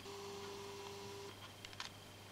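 Faint, brief whine of a camcorder's zoom motor for about a second as the lens zooms out, over a low steady hum, followed by a few small clicks near the end.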